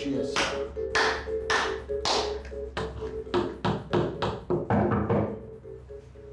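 Hand claps keeping time over music: four slow claps about half a second apart, then a quicker run of about four a second that breaks off about a second before the end.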